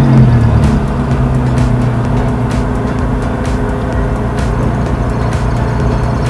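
Chery QQ's small petrol engine idling just after being started: a steady hum that settles to a lower level about a second in.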